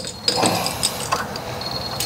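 Key-fob door access reader giving high electronic beeps, in quick pips near the start and again near the end, as it refuses the fob. A few light clicks come from the locked door in between.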